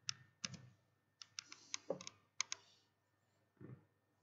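A run of sharp clicks at a computer, like keys being pressed on a keyboard: about nine quick clicks in the first three seconds, with a soft low thump near the end.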